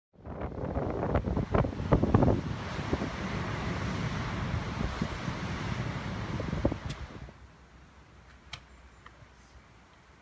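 Waves breaking on rocks with heavy wind noise on the microphone, loud with a few strong surges in the first couple of seconds. About seven seconds in it drops away to a faint quiet broken by a few small clicks.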